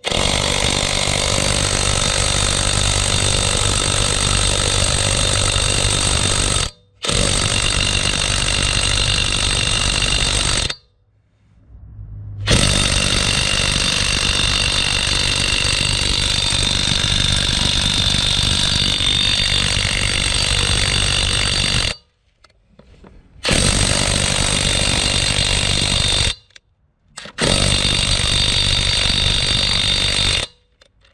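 Tenwa half-inch cordless brushless impact wrench hammering on a lug nut in five long runs of several seconds each, the longest nearly ten seconds, with short pauses between trigger pulls. The nut does not come off: the wrench is struggling with a tightly torqued lug nut, which the reviewer says it could barely take off.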